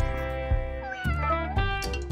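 A domestic cat meows once, about a second in, over background music with sustained notes.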